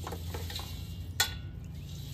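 Hands handling dry, charred tinder at a perforated metal can stove: scattered small ticks and rustles, with one sharp click a little past halfway, over a steady low hum.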